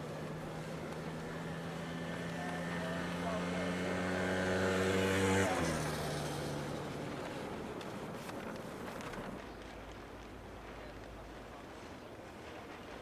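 A motor vehicle driving close past. Its engine note grows louder, drops in pitch as it passes about five seconds in, then fades away.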